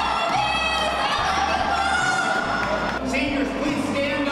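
A voice shouting over a stadium public-address system, echoing, with a crowd cheering and music playing underneath. A lower voice or tone comes in about three seconds in.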